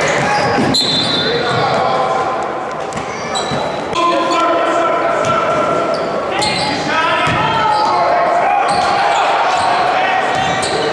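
Basketball being dribbled on a hardwood court in a large, echoing gym, with players' and spectators' voices calling out over the game.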